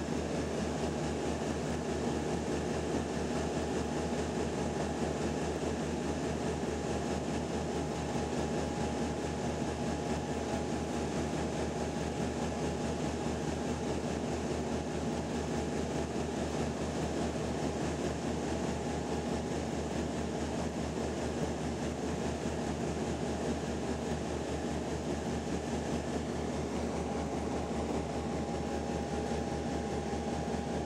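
Cabin noise of a Dash 8-300 turboprop airliner on approach, heard beside the engine: the steady drone of the turboprop engine and its four-blade propeller, a fast low throb with a steady whine above it.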